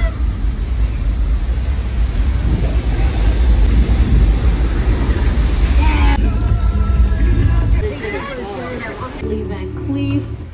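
Staged flash flood: a torrent of water rushing down a sloped street, a loud steady rush with a deep rumble under it, strongest in the middle few seconds. It cuts off abruptly about eight seconds in, where voices and music take over.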